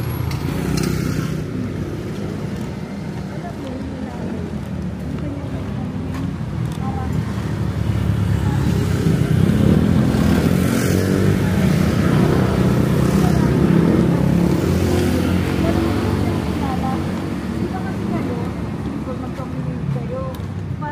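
Motorcycles and motor scooters passing on a city street, their engine sound swelling about halfway through and fading again, over steady traffic noise.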